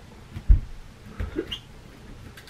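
Footsteps on a wooden floor: a few low thuds, the loudest about half a second in and another just after a second, with a brief small squeak between them.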